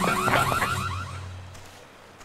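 Electronic alarm warbling in rapid repeating chirps, about five a second, fading out a little over a second in.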